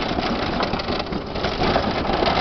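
Power wheelchair rolling over a brick cobblestone street, its frame and wheels vibrating in a fast, steady rattle as they go over the bricks.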